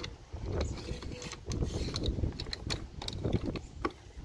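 Hands handling a hard plastic battery box on a kayak, making a string of irregular clicks and knocks with rustling in between.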